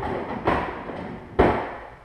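Rustling and clattering of things being handled at an open refrigerator, with a sharp knock about half a second in and a louder thud about one and a half seconds in as the fridge door is swung closed.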